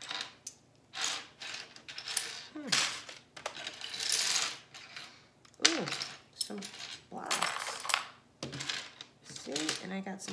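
Small plastic LEGO bricks clattering as a hand rakes through a pile on a tabletop and sorts them, in repeated bursts of rattling clicks, the longest about four seconds in.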